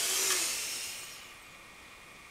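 A loud hiss, like a rush of air, that fades away over about a second and a half.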